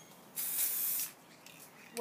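One short burst, under a second long, from an aerosol can of silver temporary hair-colour spray being sprayed onto hair.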